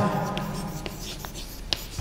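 Chalk writing on a blackboard: a series of short, sharp taps and scrapes as letters are written.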